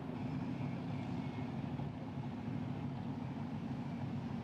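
Steady low mechanical rumble, like an engine running, with a faint high whine over it in the first second or two.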